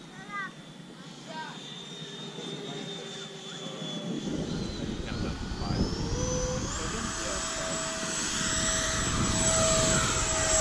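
Electric ducted-fan RC jet flying in and passing low. Its high fan whine climbs in pitch and grows steadily louder over the second half.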